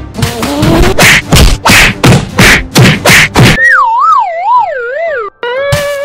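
Cartoon sound effects: a quick run of thumps, about three a second, then a wobbling tone that slides down in pitch in waves, ending on a short held note.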